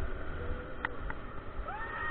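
Wind rushing over the onboard camera's microphone as the Mondial Furioso's gondola swings high, with two short clicks in the middle and, near the end, a high drawn-out wail that rises and then holds.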